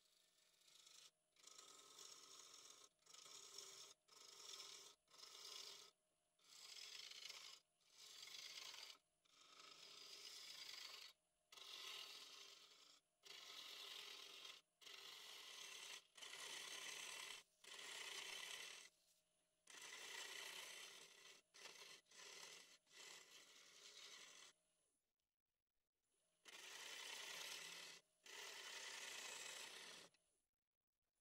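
Wood-lathe gouge cutting into a spinning cherry blank, hollowing its face: a run of hissing cutting passes, each a second or two long with short breaks between, and a longer pause about 25 seconds in.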